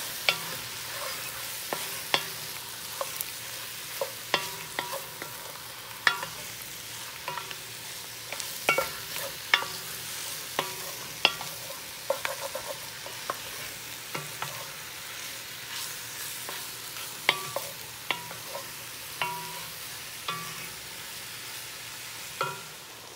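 Diced beef browning over high heat in a heavy-based pan, sizzling steadily while a wooden spoon stirs it. The spoon knocks against the pan irregularly, sharp clicks every second or so, some with a short metallic ring.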